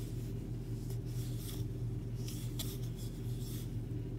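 Soft scratchy rubbing of a wooden crochet hook pulling yarn through single crochet stitches, in several short strokes, over a steady low hum.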